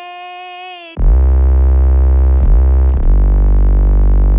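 A held vocal note on "C'est..." for about the first second. Then, about a second in, a loud electronic techno synthesizer comes in, a sustained synth sound with a heavy deep bass. It briefly dips with short downward pitch sweeps twice.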